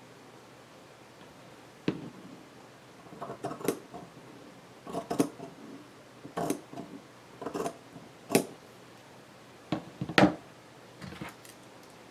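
Pinking shears snipping through lace: a series of short, crisp metallic snips of the serrated steel blades closing, roughly one a second, starting about two seconds in.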